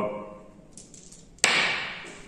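A single sharp snap about a second and a half in, with a short fading hiss after it, from the metal coping saw frame being handled and turned.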